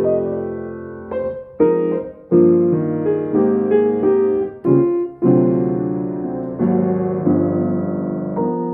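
Altenburg 5'7" grand piano played in slow chords, each struck and left to ring, with brief breaks about two and five seconds in. Its voicing is not finished yet, so the tone is a little brighter than it is going to be.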